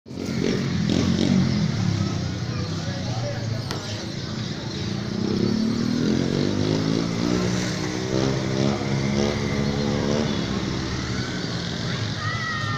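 Street noise heard from a rooftop: people's voices over a motorcycle engine that revs up and holds, with breaks near the end.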